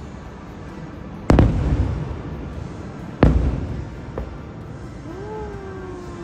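Aerial fireworks exploding: two loud booms about two seconds apart, each trailing off in a rolling rumble, then a smaller pop about a second later.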